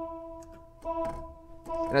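Lowrey Palladium electronic organ sounding one sustained note in its vocal ensemble voice with sustain on. The note fades slowly and is played again about a second in and once more near the end, each time with a faint key click.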